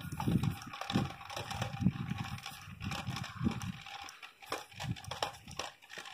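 Footsteps on asphalt at a walking pace, about two steps a second, with rustling and clicking from the microphone being handled.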